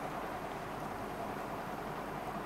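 Steady low background noise with no distinct events: room tone and microphone hiss.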